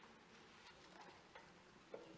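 Near silence: quiet room tone with a few faint, scattered clicks and knocks, the sharpest just before the end.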